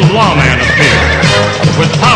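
Cartoon theme music with a horse whinnying over it just after the start, a quick run of falling, wavering calls.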